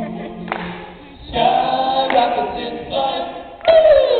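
A small group of male voices singing together in harmony, apparently unaccompanied. The singing dips about a second in, then picks back up, and a loud note near the end slides downward.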